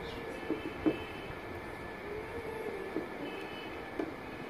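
Hands handling the edge of an LED TV panel while fitting buffer tape: two small sharp clicks less than a second in, over a steady background hum.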